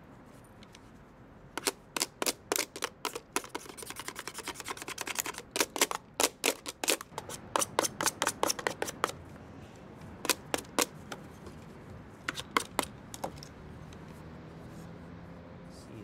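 A metal blade scratched repeatedly across the hard plastic casing of a cordless phone keypad in quick, sharp strokes. A dense run of scraping starts about a second and a half in, then come two shorter clusters of strokes, and it stops a few seconds before the end.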